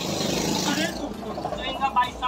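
Men talking in Hindi, with a broad rush of background noise under the voice for about the first second.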